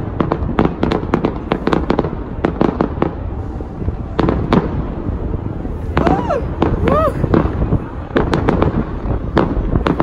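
Fireworks display going off: a rapid, irregular run of sharp cracks and bangs from bursting aerial shells. Two short sliding tones come through about six and seven seconds in.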